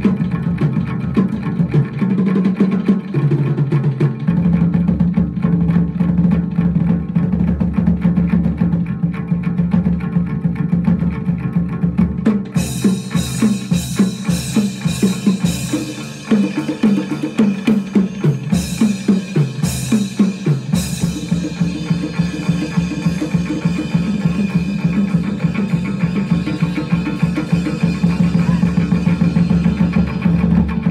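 Chầu văn ritual music for the spirit medium's dance: a steady, driving drum rhythm under a plucked lute. A brighter, crisper layer of percussion comes in about twelve seconds in and carries on.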